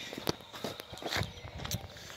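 Footsteps on wet grass and mud: a few soft, irregular steps.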